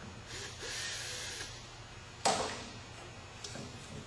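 Hands working a clamp and duct fitting onto a steel shot blast machine: rustling and scraping handling noise, then one sharp knock a little over two seconds in, the loudest sound, followed by a few small clicks. A steady low shop hum runs underneath.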